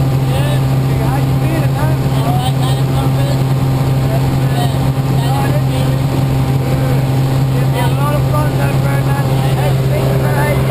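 Steady, loud drone of a small single-engine propeller plane's engine, heard from inside its cabin, with faint voices under it.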